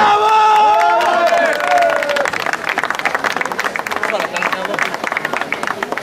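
A man's voice holds a long drawn-out call for the first couple of seconds, then a small crowd claps steadily to the end.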